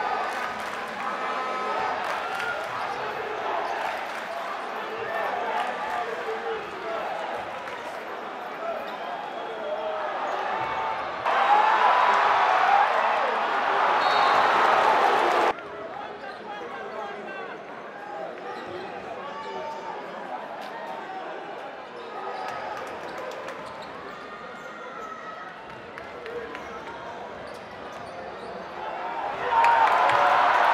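Basketball being dribbled on a hardwood court during play, with the steady chatter of an arena crowd behind it. About eleven seconds in, louder crowd noise cuts in for about four seconds and stops suddenly, and the crowd swells again near the end.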